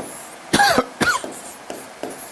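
A man coughing twice in quick succession, about half a second apart.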